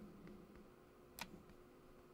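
Near silence: room tone with a faint steady hum, and one short sharp click a little after a second in from the computer being used to scroll a dropdown list.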